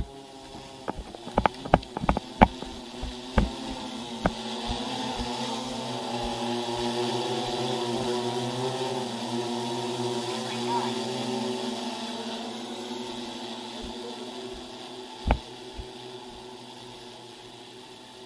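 Multirotor agricultural spray drone's propellers humming as several steady overlapping tones, growing louder as it passes close by around the middle and fading as it flies off. A run of sharp knocks comes in the first few seconds, with one more near the end.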